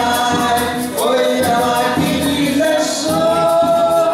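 Brazilian folk song sung by several voices together, with a steady percussion beat from a rope-tensioned drum and a shaker, and a small acoustic guitar-type viola underneath.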